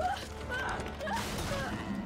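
Movie sound effect of the haunted house's wood creaking: several short creaks, about two a second, over a low rumble.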